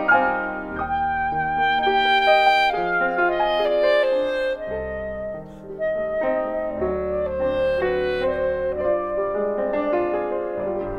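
Klezmer clarinet playing a slow melody of held notes over acoustic string-band accompaniment, in an arrangement of Yiddish folk songs.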